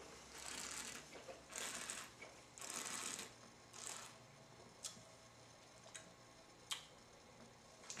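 A wine taster sipping red wine and drawing air through it in his mouth: four soft hissing slurps about a second apart, followed by a few faint small clicks.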